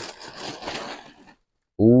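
Rustling of garments being handled and moved, cutting off abruptly after about a second and a half. A man's drawn-out "ooh" follows near the end.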